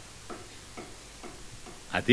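Faint, regular ticking, about two ticks a second, over a low steady background.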